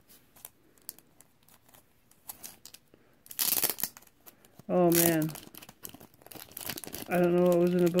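Clear plastic bag crinkling as it is handled and pulled off a thick acrylic card holder. Small rustles and clicks, then a louder burst of crinkling about three and a half seconds in.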